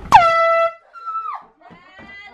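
A loud air horn blast of about half a second, a steady high-pitched blare, set off to wake a sleeping person with a fright. A second, shorter tone follows a moment later and slides down in pitch as it dies away.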